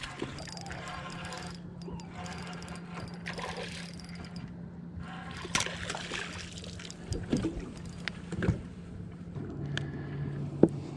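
Hooked smallmouth bass splashing and thrashing at the surface beside a small boat as it is reeled in, several sharp splashes in the second half, over a steady low hum.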